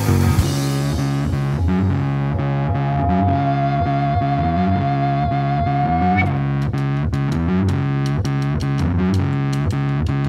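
Instrumental passage of a live rock band: distorted electric guitar through effects, a stepping bass line, keyboard and drums. A single high note is held from about three seconds in and bends upward as it ends about six seconds in.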